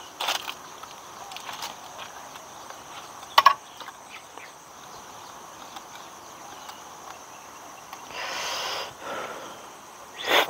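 Metal teaspoon stirring tea in an enamel mug, with two sharp clinks against the rim, one just after the start and a louder one about three seconds later. A steady high drone of insects runs underneath, and a short soft rush of noise comes near the end.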